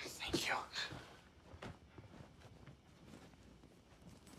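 A short, soft breathy whisper in about the first second, then quiet room tone with a few faint ticks.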